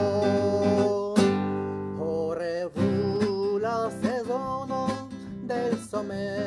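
A man singing a song in Esperanto, accompanying himself on a strummed acoustic guitar. A held note ends with a sharp strum about a second in, and the sung line picks up again about two seconds in.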